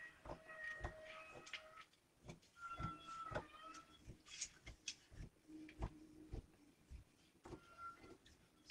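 Fabric scissors cutting cloth along a paper pattern: faint, irregular snips and clicks of the blades.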